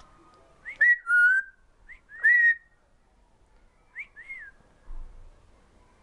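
African grey parrot whistling: a quick run of clear, loud whistled notes, some sliding up and down in pitch, about a second in, then two short, softer whistles around four seconds in.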